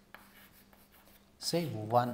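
Chalk writing on a blackboard: faint scratches and taps of the chalk stick, then a man's voice briefly near the end.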